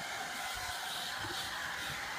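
Handheld hair dryer running steadily, an even hiss of blown air.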